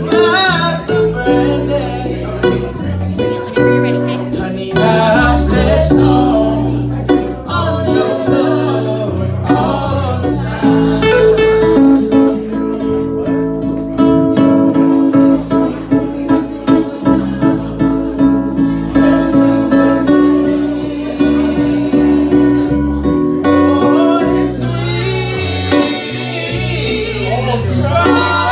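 Live band: a man singing into a microphone over strummed acoustic guitars. The vocal moves through runs and sustains one long held note near the middle.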